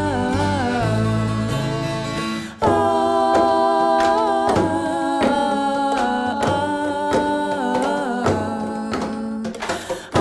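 Live folk music: acoustic guitar and upright bass with wordless singing. The low bass notes stop after a brief dip about two and a half seconds in, and the music dips again for a moment near the end.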